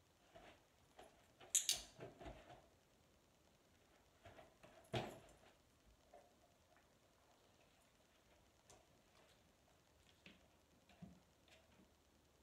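Scattered soft knocks, rustles and light clicks from a dog's paws and body against an open suitcase and the carpet, in an otherwise near-silent room. The loudest is a rustling clatter about a second and a half in, followed by a sharp knock about five seconds in.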